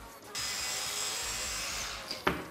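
Hand-twisted metal salt grinder grinding salt onto raw turkey, a steady dry rasp that starts about a third of a second in and stops just before the end.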